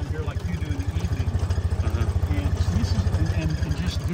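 Side-by-side utility vehicle's engine running steadily under way, with a fast, even low-pitched pulsing.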